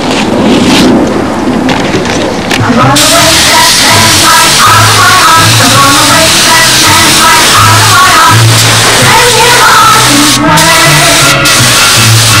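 Paint spray gun hissing as it sprays a test panel, starting about three seconds in and breaking off briefly twice near the end. Music with changing pitched notes plays underneath.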